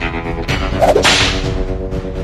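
Dramatic western film score with sustained held notes, cut through about a second in by a single sharp swishing crack.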